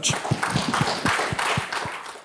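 Audience applauding: many hands clapping together at once.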